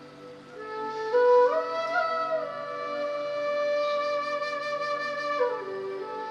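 Flute music with a slow melody that steps up through a few notes, holds one long note, then drops near the end, over a steady low drone.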